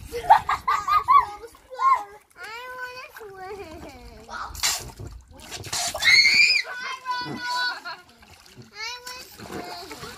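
Young children chattering, calling out and squealing while water splashes and sloshes around them in an inflatable paddling pool, with one loud high squeal about six seconds in.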